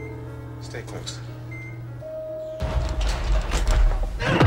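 Film soundtrack: a music score over a steady low hum, then, a little past halfway, a sudden louder scuffle with voices as a fight breaks out at the opening elevator doors.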